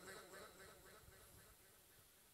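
Near silence: faint room tone through the PA, with the last of the speech's echo dying away in the first moment.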